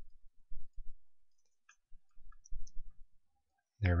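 A few faint computer mouse clicks, with soft low bumps in between. A man's voice starts near the end.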